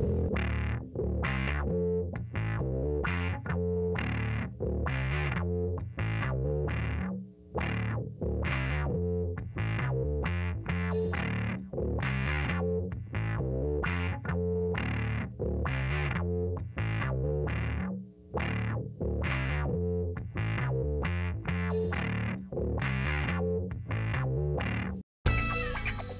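Background music: distorted electric guitar chords with effects over a bass line, played in a steady, choppy rhythm.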